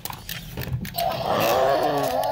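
A few handling clicks and rustles of toys, then from about a second in a loud, long roar for a toy dinosaur, sliding slowly down in pitch.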